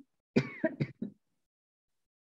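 A woman clearing her throat: a short throat-clear of a few quick bursts, starting about a third of a second in and over by about a second in.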